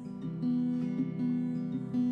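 Martin LX1E small-bodied acoustic guitar strummed in chords, the notes ringing on between strokes.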